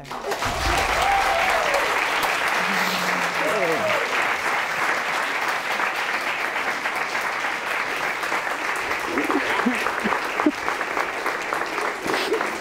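Studio audience applauding steadily throughout, with a few voices calling out and a laugh over the clapping.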